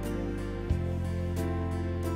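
Slow, gentle piano music with no singing: held chords over a sustained bass, with a new bass note and chord struck about 0.7 s in and another chord about 1.4 s in.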